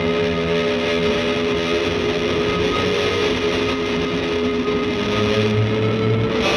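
Live rock band playing: distorted electric guitars through effects pedals, holding long sustained notes over a dense wash of sound.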